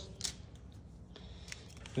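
Faint handling noise from a wiring harness in plastic loom being worked by hand: a few light clicks and rustles over a low background hum.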